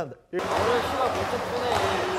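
Echoing indoor basketball-court din: voices and basketballs bouncing on a hardwood floor. It starts suddenly about a third of a second in.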